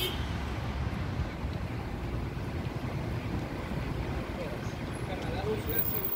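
City street ambience: a steady low rumble of road traffic, with faint voices of passers-by in the second half.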